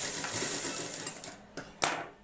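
A hiss that fades out about a second in, then two sharp metallic clicks near the end from the sewing machine's presser-foot area as cloth is set under the foot.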